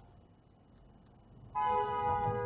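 Low road and engine rumble, then about three-quarters of the way in a loud, steady two-tone car horn blast starts suddenly and holds.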